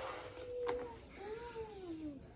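A domestic cat meowing twice: one long, level meow that ends just under a second in, then a shorter meow that rises and falls. A single sharp click of the cardboard toy box comes between them.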